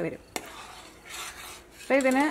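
Metal spoon stirring a thick milk mixture in a stainless steel saucepan. There is one sharp tap of the spoon against the pan about a third of a second in, then a soft swish of stirring around the middle.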